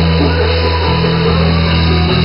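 Live pop-rock band music: a female voice singing over acoustic guitar and held low synthesizer notes, the low notes changing about halfway through.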